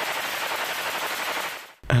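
Automatic rifle fire: one sustained burst of rapid shots run together, stopping abruptly near the end.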